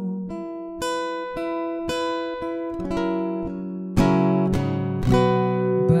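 Solo acoustic guitar playing an interlude: picked notes ringing one after another, then fuller strummed chords from about four seconds in.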